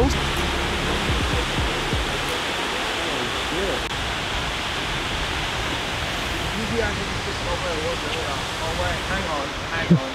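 Steady rushing of the Erskine Falls waterfall, with faint voices in the background.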